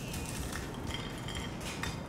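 A brittle pan-fried Parmigiano Reggiano crisp being broken up by hand, with light crackles and a few small clicks near the end as pieces drop onto a plate.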